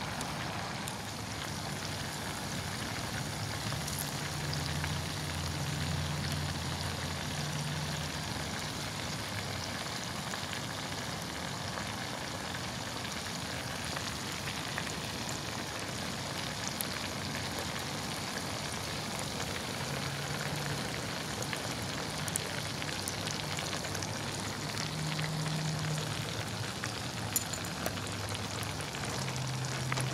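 Breaded perch fillets deep-frying in hot oil in a 2-quart cast iron Dutch oven: a steady, even sizzle of bubbling oil.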